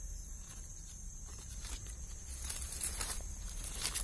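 Dry leaves and twigs rustling and crackling in short bursts in the second half, from someone moving in the leaf litter, over a steady high insect drone.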